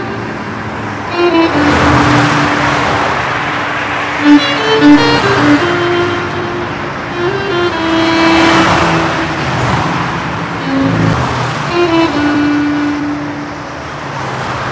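Cars passing by, two swelling and fading rushes, the first about two seconds in and the second around eight seconds. A slow violin melody plays throughout.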